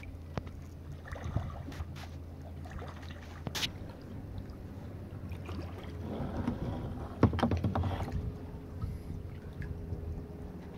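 Water lapping and dripping around a kayak, with paddle splashes and small knocks over a low steady rumble. About seven seconds in comes a louder burst of splashing and knocking.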